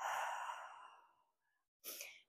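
A woman's long, audible breath out, a sigh that fades away over about a second, taken as a deliberate breath during a rest in a core workout. A short breath sound follows near the end.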